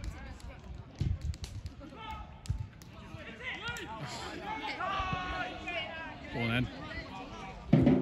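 Football match heard from the touchline: distant voices shouting across the pitch, with a few dull thuds of the ball being kicked in the first few seconds.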